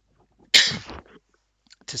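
A man sneezing once: a sudden loud, hissy burst about half a second in that dies away within about half a second.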